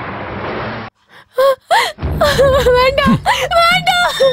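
A short hiss of noise, then a woman's voice wailing in high, wavering cries of 'oh, oh, oh'.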